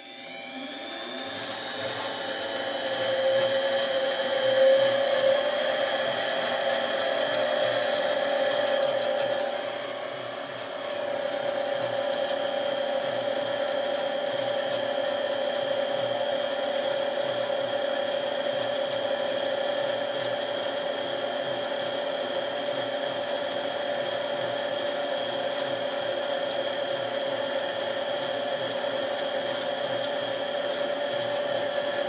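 Small benchtop metal lathe starting up and running, a steady machine whine that rises over the first couple of seconds and then holds, while a center drill in the tailstock chuck cuts a starter hole in the end of a spinning aluminum rod. The sound dips briefly about ten seconds in, then steadies again.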